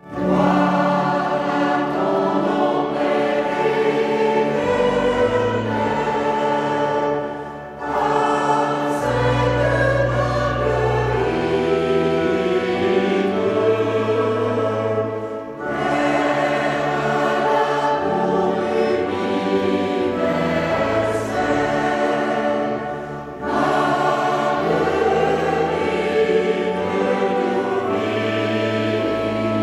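Mixed choir of men's and women's voices singing a slow hymn with pipe organ accompaniment, the organ holding steady low bass notes beneath the voices. The music moves in long phrases with a brief break for breath about every eight seconds.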